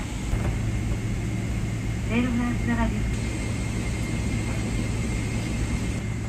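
Steady low rumble of a Boeing 777-300ER cabin as the airliner taxis after landing, with a thin steady whine above it. About two seconds in, a brief phrase of the cabin announcement over the PA cuts in.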